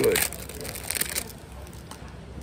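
Trading-card pack wrapper crinkling as it is torn open: a quick run of crackles that stops about a second in.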